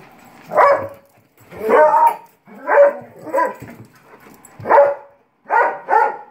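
A large shepherd-type dog barking repeatedly, about six barks spaced roughly a second apart.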